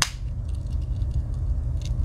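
The main blade of a Victorinox Cyber Tool 41 Swiss Army knife snapping shut with a sharp click, then a few faint metallic clicks near the end as the small pen blade is pried open.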